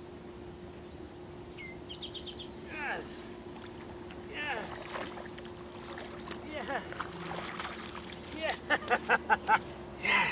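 Outdoor riverbank ambience: a high, even insect chirp repeating about three times a second for the first half, with a few scattered bird-like calls over a faint steady hum. Near the end comes a quick run of about six loud, short sounds.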